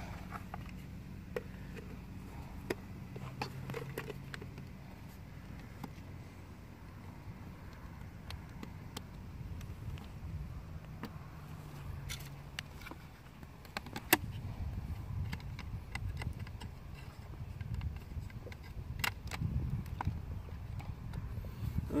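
Scattered sharp plastic clicks and taps as the hatch cover and battery of an RC boat's hull are handled and fitted, over a steady low rumble that grows louder and more uneven in the second half.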